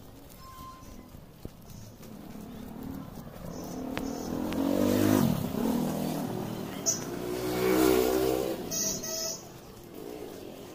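Small motorbike or scooter engines passing close by one after another. The first grows louder and drops in pitch as it goes past about five seconds in, and a second peaks near eight seconds.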